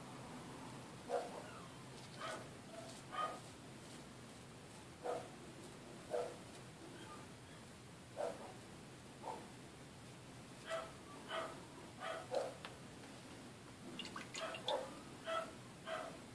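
A puppy whimpering and yelping in short pitched cries, roughly one a second and coming faster near the end, upset at being shut in her cage.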